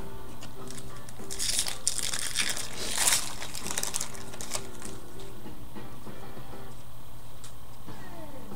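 Crinkling and rustling of a trading-card pack wrapper and cards being handled. It comes in a run of bursts between about one and three seconds in, over steady background music.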